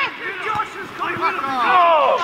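Men's voices shouting and calling out across a football pitch during play, with a sharp knock right at the start.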